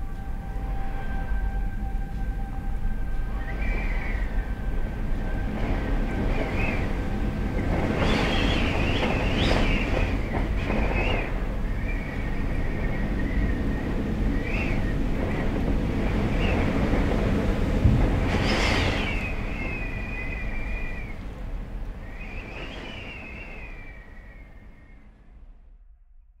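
Dark horror-film credits score: a low rumbling drone under repeated high, wavering squeals, with louder swells about a third of the way in and again about two-thirds in. It fades out over the last few seconds.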